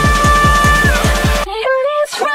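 Background electronic music: a fast bass-drum beat under held synth notes. The beat drops out about one and a half seconds in, leaving a sliding melody.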